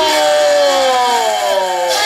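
One long, loud held note, rich in overtones, sliding slowly and smoothly down in pitch.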